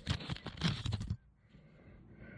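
Close rustling and scraping handling noise from a camera being shifted about under the mower deck, lasting about a second.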